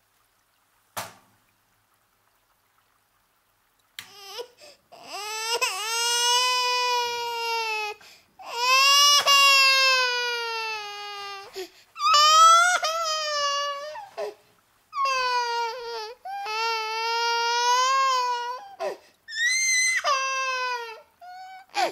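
A single sharp click, then from about four seconds in an infant crying in a run of long, high, wavering wails with short breaths between them.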